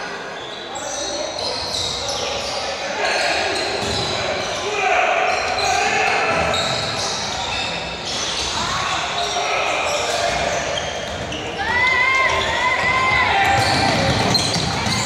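Indoor basketball game in a large, echoing gym: the ball being bounced on the court and players moving, under steady shouting and chatter from players and spectators, with a few short high squeals near the end.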